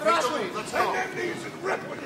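Boxing cornermen shouting a run of short, loud, high-pitched calls from ringside.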